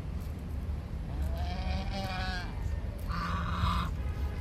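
Domestic goose calling twice over a steady low rumble: a drawn-out, gently wavering call in the middle, then a louder, harsher, buzzy honk near the end.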